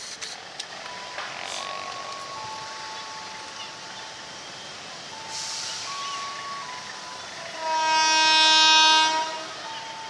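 Diesel locomotive air horn (CC 203) giving one loud, steady blast of about a second and a half near the end. Before it, faint steady high tones shift in pitch over low background noise.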